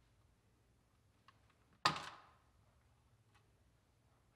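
The clear plastic pop bottle of a 3D-printed teeter-totter mouse trap tips over under a mouse's weight and drops onto its frame. A faint click comes just before one sharp clack about two seconds in, which dies away within half a second: the trap tipping as designed.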